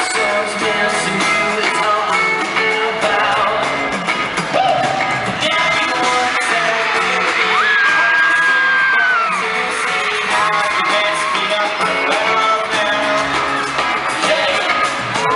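Live pop song played through an arena's sound system, with a boy band singing and the crowd yelling along, echoing in the big hall. A long high held note rises over the music about eight seconds in.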